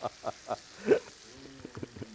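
A man laughing in short bursts, the pitch bending and then stepping in quick pulses, over the faint sizzle of fish frying in a skillet.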